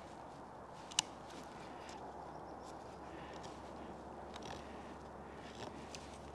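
Solognac Sika 100 stainless knife carving a notch into a green maple stick by hand: faint scraping and shaving cuts, with one sharp click about a second in.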